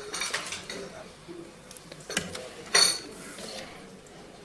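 Light clicks and handling noises of people moving about a meeting hall, with one sharp, ringing clink a little under three seconds in.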